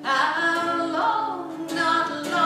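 Woman singing a slow folk song into a microphone, holding long notes in two drawn-out phrases, over a steady low sustained tone.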